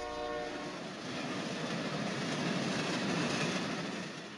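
A train's horn holds a chord of several steady tones that stops about half a second in. The train then runs along the track, a rushing rumble that builds and then fades.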